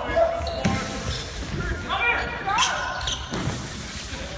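Players' voices shouting and calling, echoing in a large sports hall, with sneakers squeaking sharply on the wooden floor around the middle and a few dull thuds of bodies landing on gym mats.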